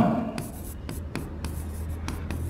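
A pen writing by hand on a board surface, scratching with a few faint ticks of the tip, over a low steady hum.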